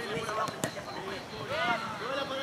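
Distant shouting and calling voices of players and people around a youth football match, fainter than the coach's nearby shouts, with one sharp knock about half a second in.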